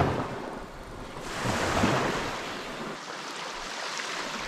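Small waves washing up on a sandy beach, the surf swelling about a second and a half in and then fading back.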